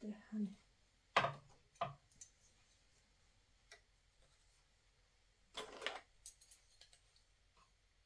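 Small metal hand tool clicking against the latch needles of a domestic flat-bed knitting machine as stitches are moved by hand for the decreases: two sharp clicks a little over a second in, a short scraping rustle about halfway through, then a few light clicks.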